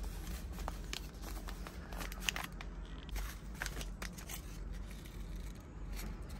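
Paper seed packets handled close up: crinkling and rustling, with scattered sharp clicks.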